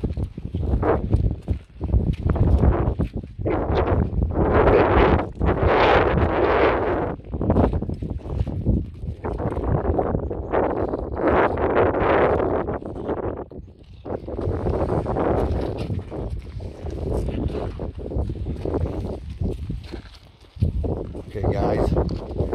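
Wind buffeting the microphone in gusts that rise and fall, with footsteps on a stony hill path.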